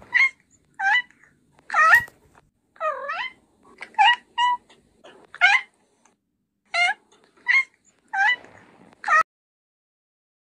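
A kitten meowing over and over, about a dozen short, high-pitched mews with gaps between them, some rising and falling in pitch.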